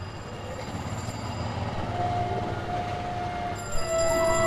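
Background film score fading in over a steady haze of noise: a long held, flute-like note enters about halfway and steps slightly lower near the end.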